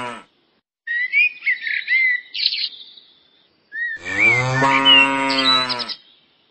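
Cattle mooing: the end of one long, low moo at the start and another long moo near the end. Birds chirp in the gap between the moos and over the second one.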